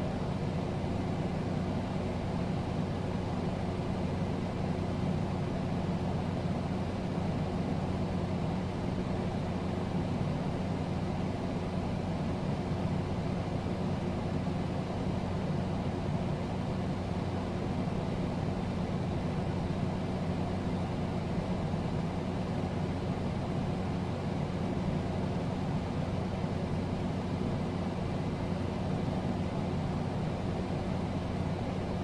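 A steady low hum over an even hiss, unchanging throughout, with no voice or music.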